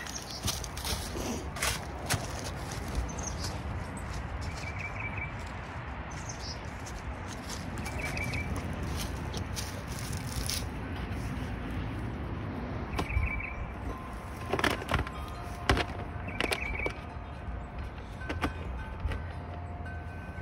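Outdoor ambience with wind rumbling on the microphone, and a small bird giving the same short chirping trill four times, a few seconds apart. Scattered light knocks and rustles.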